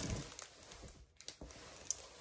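Faint rustling with a few light ticks as a large diamond painting canvas is handled and moved close.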